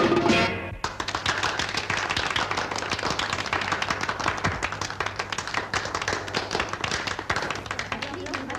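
Band music with guitar cuts off abruptly just under a second in, followed by a dense, irregular clatter of many quick footsteps hurrying across a hard floor.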